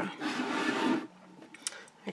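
Greyboard craft box being handled and slid on a cutting mat: a rustling scrape lasting about a second, then quiet with one faint click.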